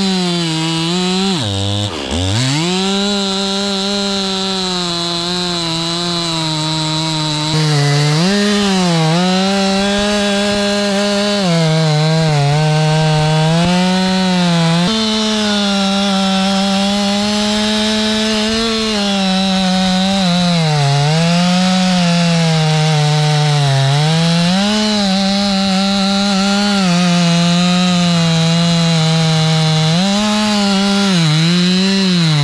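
Stihl chainsaw cutting through a thick oak trunk, held near full throttle. Its pitch sags briefly each time the chain bites harder and then recovers, with one deep dip about two seconds in.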